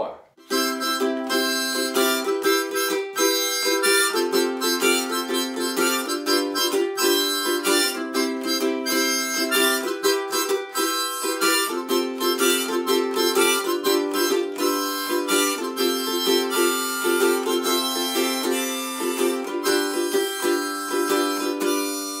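Harmonica played in a neck holder over a strummed ukulele, a steady-rhythm instrumental intro to the song with held harmonica chords and melody.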